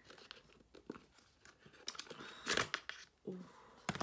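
Printed cardboard sleeve of an eyeshadow palette being torn and pulled open, with small crinkles and scrapes and one louder tear about two and a half seconds in.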